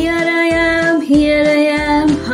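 A children's nursery-rhyme song: a singing voice over a backing track, holding two long notes of about a second each, the second a little lower than the first.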